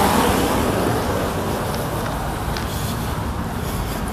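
Road traffic on a busy multi-lane highway: a steady rush of tyres and engines, loudest at the start as a vehicle goes by and then easing off.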